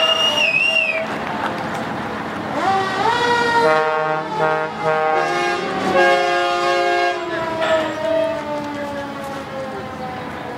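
Fire truck sounding its horns as it drives past, several horn tones held at once. The pitches glide up about three seconds in, and one tone slides slowly down over the last few seconds.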